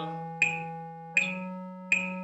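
Yamaha electronic keyboard playing the concert E major scale in half notes, each note held as a sustained tone and stepping up to the next note about a second in. Metronome clicks at 80 beats per minute, about three-quarters of a second apart, sound over it.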